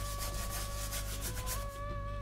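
Bristle paintbrush scrubbing thick paint across a stretched canvas in a quick series of short strokes. Soft held notes of background music sound underneath.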